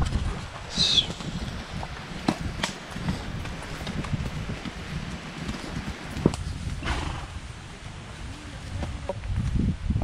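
Horses walking along a dirt forest trail: irregular hoof knocks over a steady low rumble of movement noise, with a brief high falling sound about a second in.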